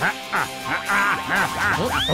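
A cartoon character's voice laughing 'ha ha ha' in a quick run of about six syllables, roughly three a second, over background music, ending in a rising swoop.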